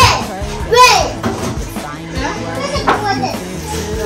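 A young child's high-pitched voice calling out and squealing, loudest in the first second, over background music.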